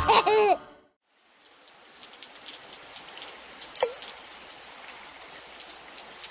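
Steady rain falling with scattered drips. It fades in after a brief silence, and one louder drop plinks about four seconds in.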